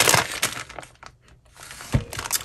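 Clear plastic bag of wax melt pieces crinkling as it is picked up, loudest at the start and dying away within about a second, then a short thump near the end.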